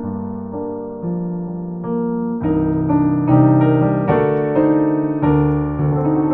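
A Yamaha CLP785 digital piano played in a slow passage of held, ringing chords, heard through its own speakers and picked up in the room by a microphone. The chords swell louder about halfway through, then ease off.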